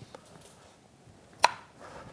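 A single sharp click about one and a half seconds in, from hands handling parts at an outboard lower unit's water pump. The rest is quiet room tone.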